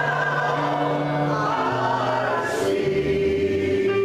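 Small mixed gospel choir singing a slow hymn in long held notes, with electric keyboard accompaniment; a single long note is held near the end.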